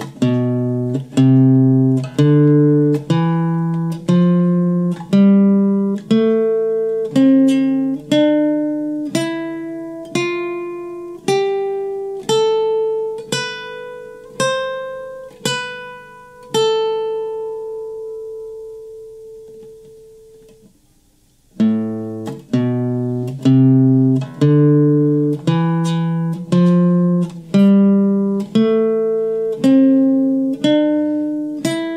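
Nylon-string classical guitar playing the natural minor scale box pattern as single notes, about one and a half a second, climbing steadily in pitch. The top note is held and rings out for a few seconds. After a brief pause, the climbing run starts again from the low note.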